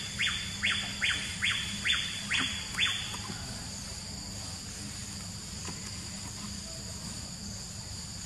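Steady high-pitched insect chorus, with a run of about seven harsh, rasping pulses, roughly two a second, that stops about three seconds in.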